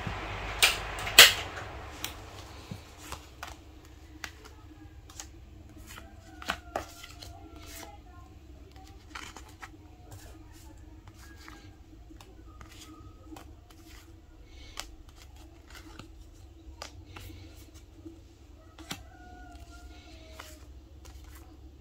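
Vinyl stickers being shuffled and laid down by hand on an aluminium laptop lid: irregular crinkly rustles and light taps, the loudest two about a second in.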